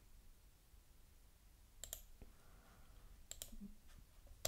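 Near silence broken by a few faint computer mouse clicks: a pair about two seconds in, one shortly after, and another pair past three seconds.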